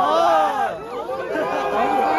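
A large crowd's many voices shouting and talking over each other, loud and continuous.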